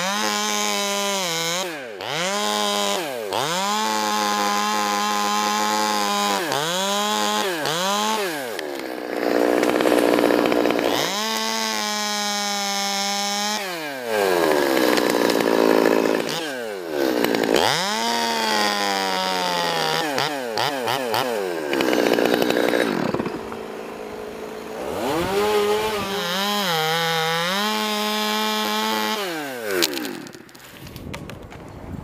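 Chainsaw cutting through maple limbs, revving up and down over and over. It holds a steady high pitch in long stretches, and between them the pitch drops away and climbs back.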